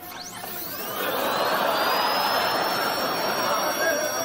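Dental drill handpiece spinning up: a whine that rises in pitch over the first second, then holds as a steady high whine over a hiss.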